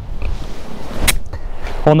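Golf iron clipping the grass in a practice swing: one short, sharp swish about a second in.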